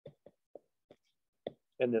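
About five faint, short taps at uneven intervals: a stylus tapping on a tablet screen while handwriting.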